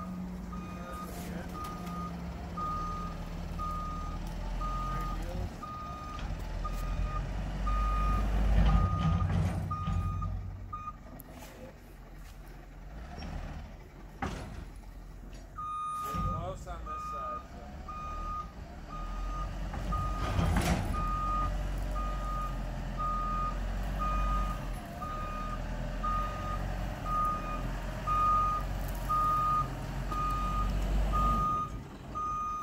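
Truck's reversing alarm beeping about once a second over the low rumble of its diesel engine as it backs up with a wood chipper in tow. The beeping stops for about five seconds partway through, then starts again.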